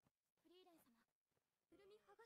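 Very faint voice of an anime character speaking, its pitch wavering, in two short phrases about a second apart.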